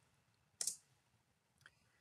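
A single short, sharp click from the computer control advancing the presentation to the next slide, followed by a much fainter tick; otherwise quiet room tone.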